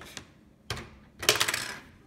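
Plastic Lego pieces clicking and rattling as they are handled: one sharp click, then a brief, louder clatter of small plastic knocks about a second and a half in.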